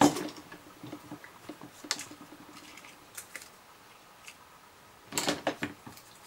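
Faint scattered taps and rustles of hands handling die-cut cardstock pieces on a cutting mat, with a louder cluster of taps near the end.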